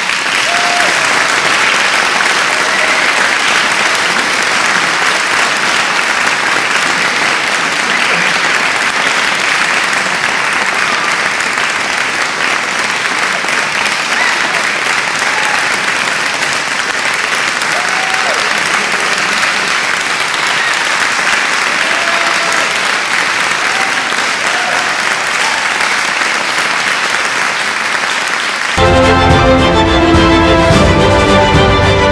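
Sustained applause from a crowd, a steady even clapping. Music cuts in near the end.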